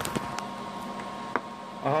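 A few sharp clicks from equipment being handled, over a faint steady hiss and a thin steady tone. A drawn-out voice begins just before the end.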